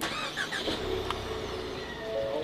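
A 2019 Ford Mustang's engine starting up and running, heard from inside the cabin: it comes in suddenly, then settles into a steady low run.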